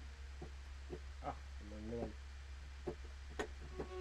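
A few brief, faint notes and clicks from a sampled string-ensemble patch being tried out on a MIDI keyboard, over a steady low mains hum; a sustained string chord starts right at the end.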